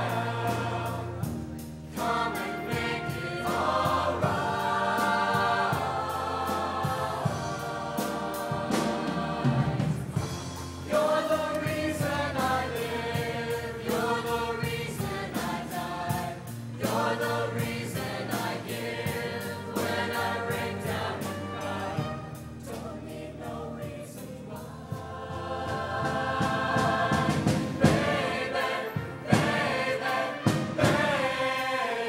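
High school show choir singing in harmony over instrumental accompaniment, in long held phrases a few seconds each.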